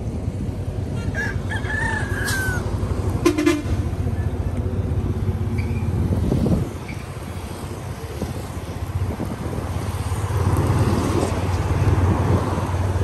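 A rooster crowing once, about a second in, over a steady low rumble of road traffic. A brief sharp noise follows about three seconds in.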